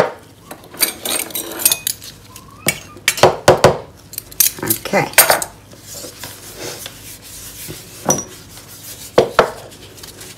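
Small glass bottle and glass jar clinking and knocking together as the last drops of oil are tapped out: a quick run of sharp clinks through the first half, then two more near the end.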